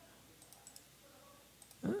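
A few faint, sharp computer mouse clicks over quiet room tone, then a voice starts just before the end.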